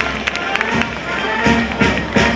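March music from a band playing, mixed with crowd voices and the dull thuds of cavalry horses' hooves on grass as the mounted troop passes at a trot.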